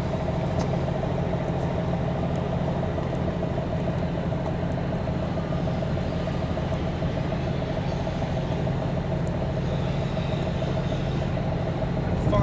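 A moored boat's engine idling steadily: a low hum with a steady higher tone above it.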